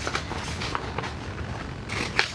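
Scissors cutting a sheet of printer paper: a few faint snips with the paper rustling, and a louder rustle of the sheet near the end.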